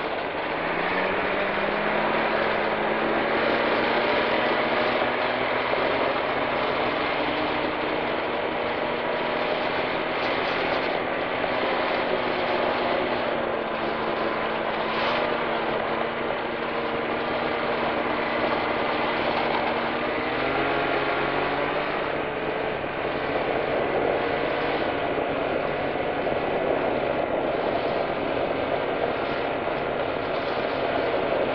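Ski-Doo snowmobile engine pulling away, its pitch climbing over the first couple of seconds, then running steadily at trail cruising speed, with a change in the engine note about two-thirds of the way through.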